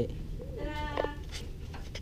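A brief high-pitched vocal exclamation from a person, lasting about half a second and coming just under a second in.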